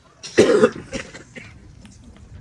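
A person coughing once, about half a second in, short and sharp, with faint low background afterwards.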